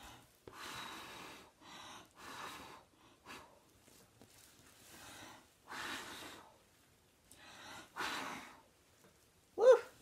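A person blowing hard breaths through the lips onto wet acrylic pour paint to spread it across the canvas: about seven separate hissy puffs, each half a second to a second long.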